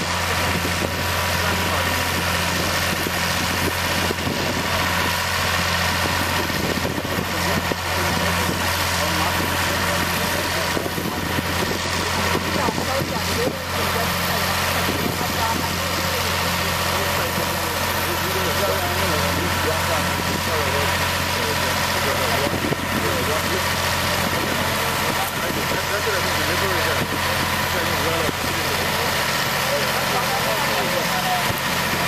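Engine of a sugar-cane elevator running steadily at an even, unchanging pitch, with voices talking in the background.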